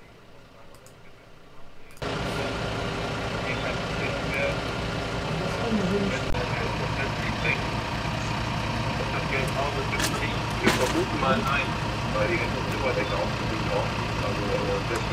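Quiet for about two seconds, then a steady idling engine cuts in abruptly, with indistinct voices and occasional clicks over it.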